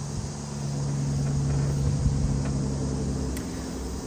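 A steady low mechanical hum, like an engine running, that grows louder through the middle and eases off near the end.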